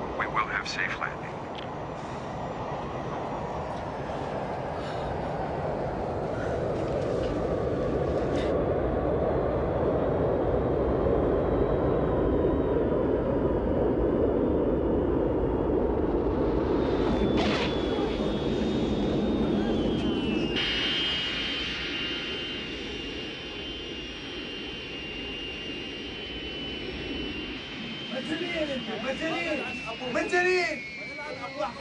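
Jet airliner landing: a steady engine roar that swells and then eases, a single sharp knock about 17 seconds in, then a high steady engine whine that falls in pitch near the end as the engines wind down.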